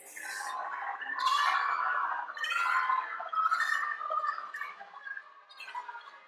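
A man laughing hard in breathy, irregular bursts, loudest in the first few seconds and dying away toward the end.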